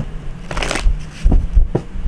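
A deck of cards being shuffled and handled by hand: a rustling burst about half a second in, then a couple of short, sharp card snaps and taps.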